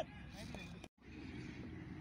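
Low steady outdoor background hum with faint distant voices. About halfway through, the sound cuts out completely for an instant where the footage is edited, then the same hum resumes.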